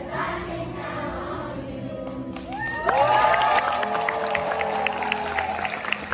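A group of children singing together, ending a little over two seconds in. Then loud cheering breaks out, with long held shouts and hand clapping.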